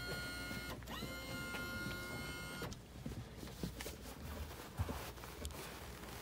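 A small electric motor whining at a steady pitch, spinning up quickly at each start: it stops briefly less than a second in, starts again and runs for about two seconds before cutting off, leaving only faint clicks and knocks.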